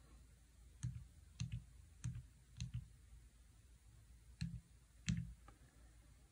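Faint clicks of an HP 15C Limited Edition calculator's keys being pressed, about six presses at uneven intervals.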